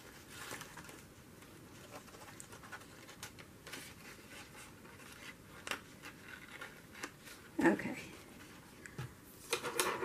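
Faint rustling and scratching of paper handled by fingers as a paper snake cutout is worked into slits in a printed page, with a few light ticks. Brief breathy sounds come about three-quarters of the way through and again near the end.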